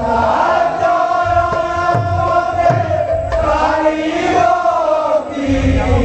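Kirtan: voices chant a long, held devotional line together over hand-played two-headed barrel drums. The deep drum strokes slide down in pitch.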